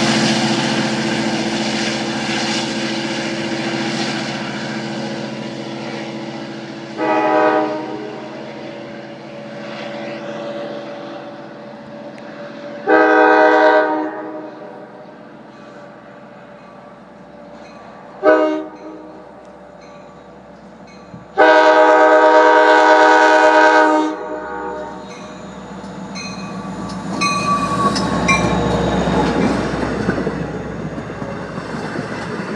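A diesel locomotive's engine fades as a train pulls away. Then an approaching train sounds its air horn in four chord blasts, the short third blast and the longest last blast matching the long-long-short-long grade-crossing signal. Near the end the train rolls past close by, its wheels clacking on the rails.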